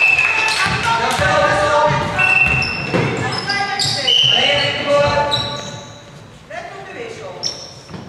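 Basketball game on a hardwood court: sneakers squeaking in short sharp squeals, the ball bouncing, and players calling out. It is busiest for the first five seconds and quieter near the end.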